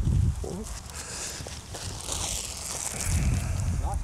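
Wind buffeting the microphone, with a faint crinkling of clear plastic wrapping as it is pulled off a new golf wedge's head.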